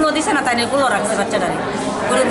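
Speech only: a woman talking in Bengali, with other voices chattering around her.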